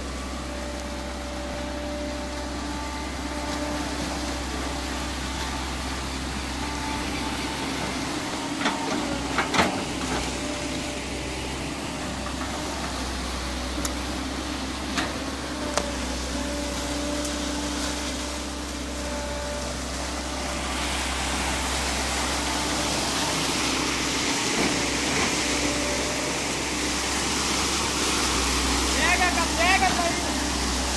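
Volvo crawler excavator's diesel engine running steadily while it digs into an earthen dam wall, with a few short sharp knocks of the working machine through the middle.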